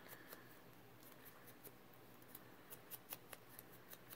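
Near silence with a scattering of faint, sharp clicks and ticks from hands handling small paper pieces and a small bottle over a cutting mat.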